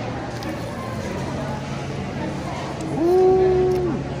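A woman's held closed-mouth "mmm" hum with a mouthful of food, one steady note just under a second long about three seconds in, over the steady background noise of a busy indoor room.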